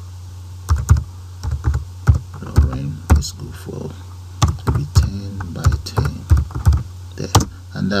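Computer keyboard keystrokes: a dozen or so separate, unhurried clacks as a short command is typed and entered, over a steady low electrical hum.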